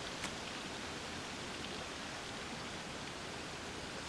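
Steady, even hiss of outdoor water ambience, with a faint click just after the start.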